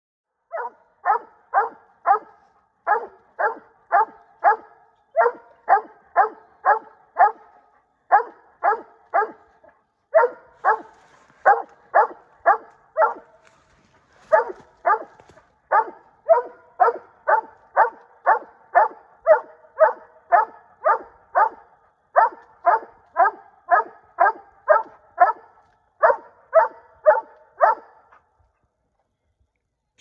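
A coonhound barking treed at the base of a tree with a raccoon up it: sharp barks about three a second, in runs of four or five with short breaks, stopping near the end.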